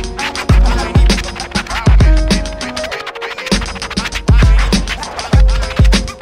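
Hip hop instrumental break: a drum beat and bass line with turntable scratching and no rapping. The kick and bass drop out briefly about halfway through, then the beat comes back in.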